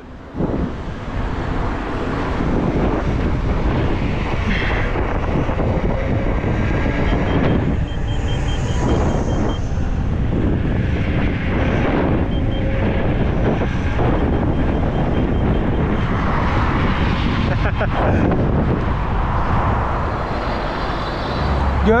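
Wind rushing and buffeting on the microphone, mixed with tyre and road noise, while riding fast at roughly 30 to 60 km/h.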